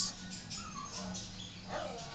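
Felt-tip marker squeaking on a whiteboard as a circle and a line are drawn: faint, short, wavering squeaks, one near the middle and one near the end, over a low steady hum.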